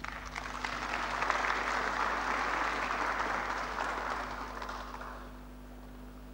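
Audience applauding, building over the first second or so and dying away about five seconds in.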